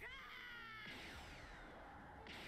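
Faint, muted audio from the anime episode playing: a few falling whistle-like glides in the first second or so, then only a faint hiss.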